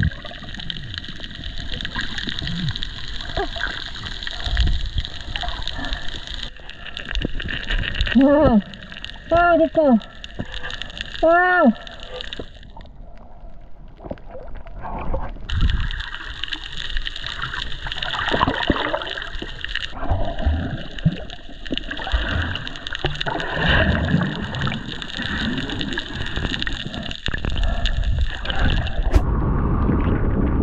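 Underwater sound picked up by a submerged camera: a steady watery hiss and gurgling, with several short, muffled vocal cries that rise and fall in pitch between about eight and twelve seconds in.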